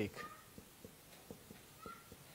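The last drawn-out syllable of a man's chanted Quran recitation dies away at the very start. Then comes a quiet room with a few faint clicks and a couple of faint, brief high tones.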